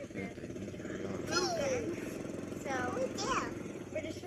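Side-by-side utility vehicle's engine running steadily, with girls' high voices over it twice.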